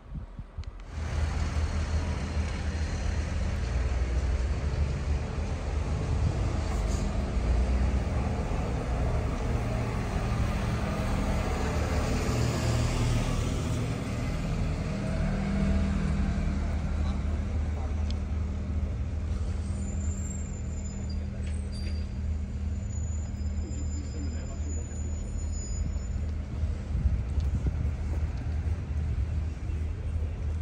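Street traffic dominated by the steady low hum of a heavy vehicle's engine running close by, with a car passing in the middle and thin high squeals, like brakes, a few seconds from the end.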